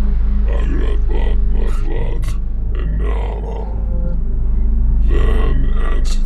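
A deep, guttural-sounding voice speaking, with a brief pause about halfway through, over a steady low drone.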